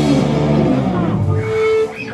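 Live rock band (electric guitars, bass and drums) ending a song: the full band dies away about a second in, leaving one held high note that rings briefly and cuts off sharply near the end.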